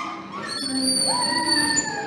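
Children shouting and squealing as they ride rolling metal chair trolleys, with a long steady high-pitched squeal through the middle.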